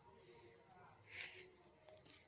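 Faint, steady high-pitched chirring of crickets.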